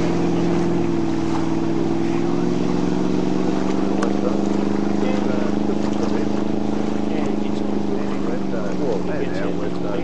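Inboard engine of a classic wooden speedboat running hard on a run across the water, a loud steady engine note that eases slightly in pitch near the end.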